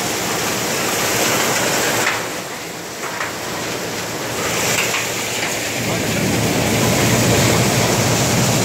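Threshing machine running, a loud steady rushing noise of the machine and crop being thrashed. A deeper rumble joins about six seconds in.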